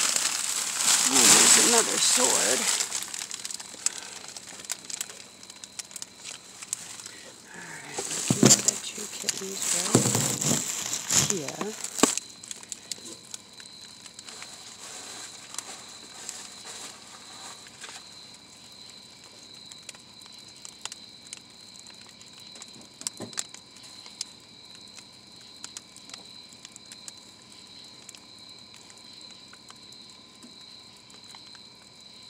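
Plastic bags and bubble wrap rustling and crinkling as they are handled, in two loud spells near the start and from about eight to twelve seconds in. After that it goes quieter, with scattered small crackles and a faint steady high whine.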